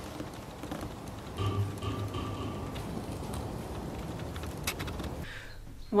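Soft patter of a snow leopard's paws on bark-chip ground as it walks, over a faint hiss, with a brief low steady hum in the middle.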